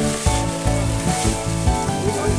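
Dry banana leaves and stalks rustling and crackling as they are gathered and piled onto a compost heap, over background music with sustained notes.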